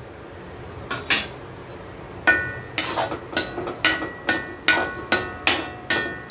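Metal spatula clinking against a metal kadai while stirring a thick jaggery and coconut filling: a couple of soft knocks about a second in, then sharp metallic strikes about two or three a second, each ringing briefly.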